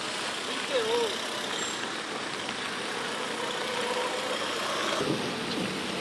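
Traffic on a rain-soaked street: a steady hiss of tyres on wet road and rain, with vehicle engines running underneath.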